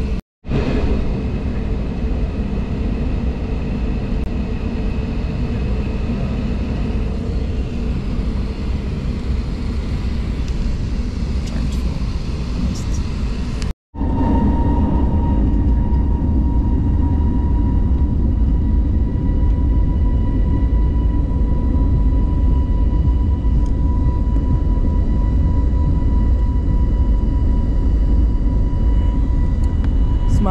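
Airliner cabin noise on the ground: the steady low rumble of the jet engines and airframe heard from a window seat. After a break about 14 s in it is a little louder, with a steady whine over the rumble.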